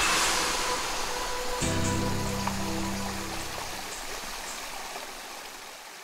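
Small stream cascading over rocks: a steady rush of running water that fades out gradually.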